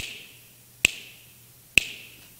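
A man snapping his fingers three times, about once a second, marking off the passing seconds. Each snap is sharp and leaves a brief echo in the room.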